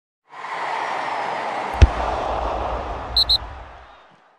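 Logo-reveal sound effect: a rushing whoosh that swells in, a single sharp hit with a deep boom under it just under two seconds in, then two quick high blips shortly after, before it fades out.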